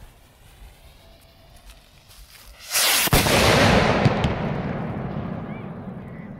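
A large stick-mounted firework rocket going off: a sudden loud rush and sharp bang about three seconds in, then a long fade. The rocket blew up at or just after launch instead of climbing away.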